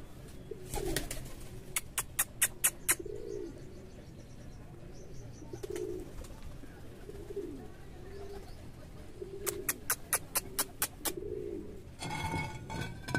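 Domestic pigeons cooing, a string of short low coos. Two quick runs of sharp clicks cut in, about two seconds in and again near ten seconds, louder than the coos.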